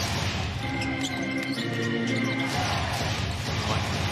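Basketball arena game sound: a basketball being dribbled on the hardwood court over steady crowd noise, with arena music held for a couple of seconds in the middle.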